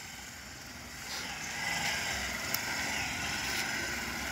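Motorcycle engine running at low speed as the bike rides the practice course, growing louder about a second in as it comes closer.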